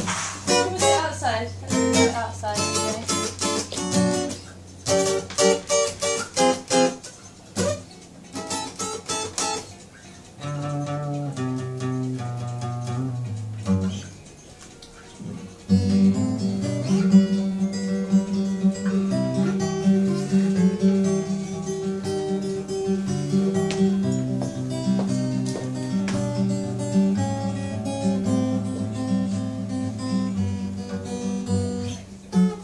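Acoustic guitar picked: notes and chords in short separated phrases with pauses for the first ten seconds or so, then, after a brief quieter spell near the middle, a steady continuous passage.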